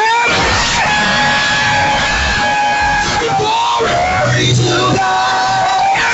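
Live gospel praise-and-worship music: lead singers on microphones hold long sung notes over instrumental accompaniment, with shouting voices mixed in.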